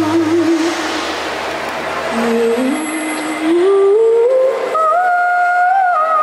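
A girl's solo voice singing through a microphone and PA. She holds a note at the start, climbs step by step through a rising phrase from about two seconds in, and holds a long high note near the end.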